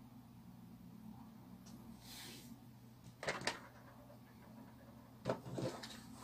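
Light handling noises as wire arms sheathed in plastic tubing are fitted onto the candelabra's central pole: a brief soft rustle about two seconds in, then two quick pairs of sharp clicks and knocks, one near the middle and one near the end.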